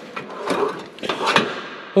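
A drawer of a small-parts cabinet sliding shut with a rustle of the loose sealing rings inside, with two sharp knocks, about half a second and about a second and a half in.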